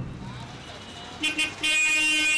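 Road traffic in a jam with a low steady rumble. A vehicle horn gives a short toot a little after a second in, then a longer, louder held honk near the end.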